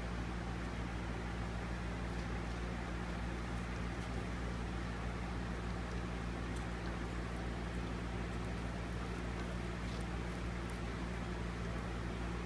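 A steady low hum at a constant level, with faint small ticks now and then.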